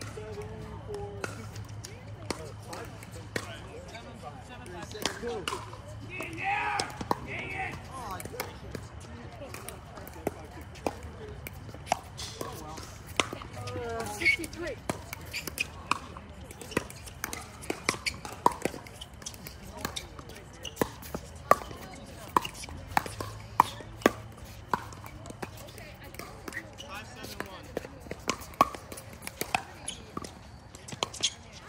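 Pickleball paddles hitting hard plastic balls, a string of sharp pops in uneven rallies from several courts, coming thicker in the second half. Players' voices are heard in the background.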